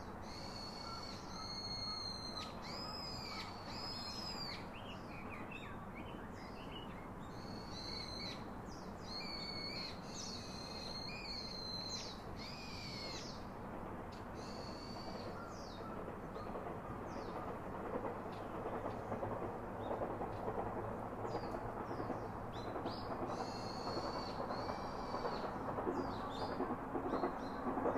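Birds calling: runs of high, arching whistled notes through the first half that die away, then return near the end. Under them is a steady rushing background noise that grows louder in the second half.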